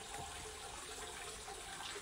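Hot-spring water pouring steadily from a spout into an open-air rock bath.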